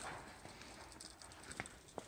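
Hands and boots knocking on the rungs of a rickety, rusted steel ladder during a climb: a sharp metallic knock at the start, then another smaller one about a second and a half later.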